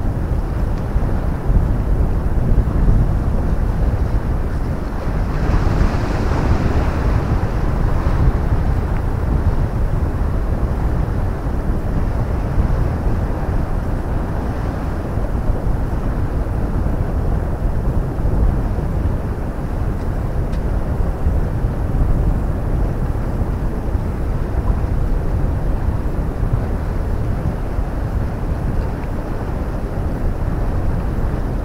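Wind buffeting the microphone as a steady low rumble, with the sea washing beneath, and a louder, brighter rush about five to eight seconds in.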